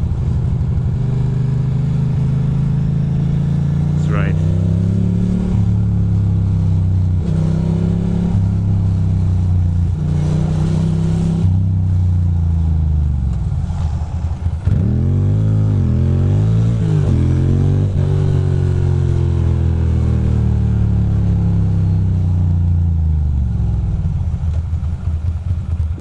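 A 2006 Ducati Monster 620's air-cooled L-twin engine running on the move, its pitch rising and falling as it accelerates and shifts. It drops off about fourteen seconds in as the bike slows for a turn, revs up and down, pulls steadily again, then eases down near the end.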